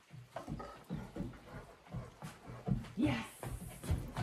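A large dog panting in short, quick breaths, about three a second.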